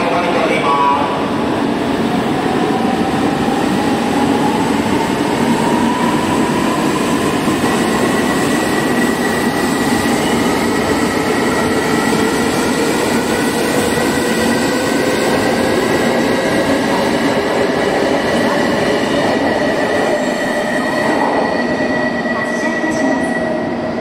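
An E2 series Shinkansen train pulling out and accelerating, its traction motors giving a whine of several tones that rise steadily in pitch as it gathers speed.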